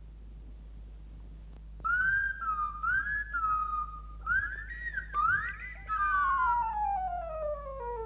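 A Clanger's slide-whistle voice calling: a string of rising-and-falling whistled phrases that starts about two seconds in and ends in a long, slowly falling glide.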